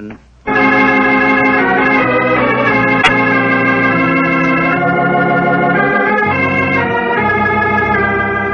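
Organ music bridge between scenes of a 1940s radio drama: sustained organ chords that begin abruptly about half a second in and shift to new chords every second or so.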